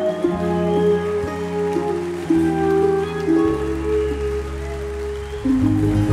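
Live country band music: slow, sustained chords that change about every second, with a fuller, louder chord coming in near the end.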